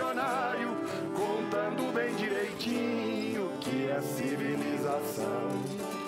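Caipira country music played live on acoustic guitar and viola caipira, picked notes between sung lines, with a sung note held with vibrato in the first second.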